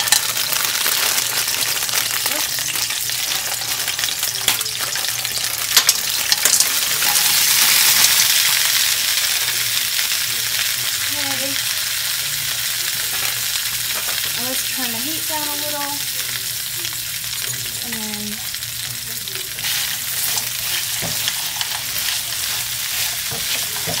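Frozen edamame pods sizzling in hot grapeseed oil in a wok, with the ice on the pods spitting in the oil. The sizzle is loud from the start, swells about eight seconds in and then settles to a steady fry, with a few sharp clicks about six seconds in.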